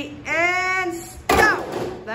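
A long held voice call, then about a second in a sudden loud crash as many golf tubes hit the chairs at once for the final note, with voices whooping over it.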